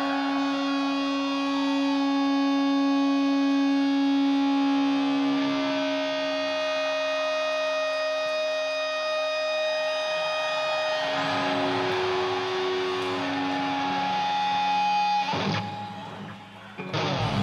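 Electric guitar solo through an amplifier, playing long sustaining notes that hold for several seconds, in a sankha dhwani style that imitates a conch-shell call. Near the end the held notes give way to a sudden noisier wash.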